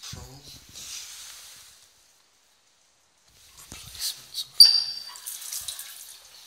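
Water trickling from an old cross-head tap into a ceramic washbasin, with a few clicks and a short, high squeak just before the end.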